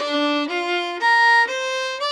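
Solo fiddle playing slow, separate bowed notes, about one every half second, stepping upward in pitch, with the last note held: the opening lick of a Canadian reel in B flat, played at teaching pace.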